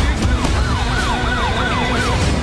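Police siren in a fast yelp, its pitch rising and falling about four times a second, over a deep rumble.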